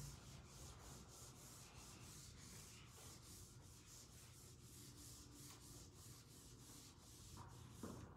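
Marker being wiped off a whiteboard: faint, quick back-and-forth rubbing strokes repeated several times a second.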